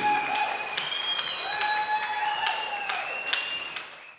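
Audience applauding, with scattered claps and a few long held high tones over the crowd noise; the sound fades out near the end.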